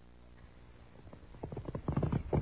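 A rapid, uneven run of thuds that starts faint about half a second in and grows steadily louder, over the low hum of an old recording.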